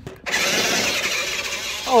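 Ruko 1601AMP amphibious RC truck's electric drive motors and gears whirring as it sets off at speed, starting suddenly about a third of a second in and running steadily.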